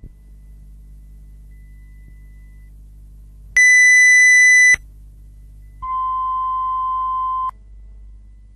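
Two steady electronic beep tones over a low hum: a loud, higher-pitched tone lasting about a second starts midway through, then a lower, softer tone lasting about a second and a half.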